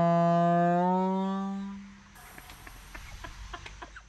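Compressed-air horn on an air hose blowing one steady low note that lifts slightly in pitch about a second in and dies away before two seconds. Faint scattered clicks follow.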